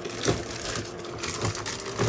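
Plastic packaging crinkling and a cardboard box rustling as hands rummage inside it and draw out a plastic-bagged part.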